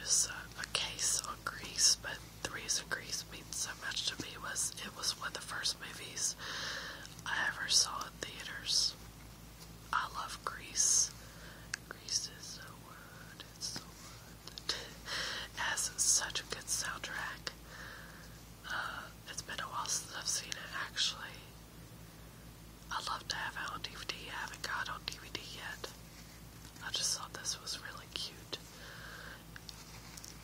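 A woman whispering in short phrases with brief pauses, too breathy for the speech recogniser to write down.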